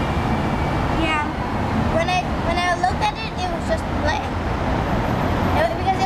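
Children's voices chattering in the background over a steady low rumble.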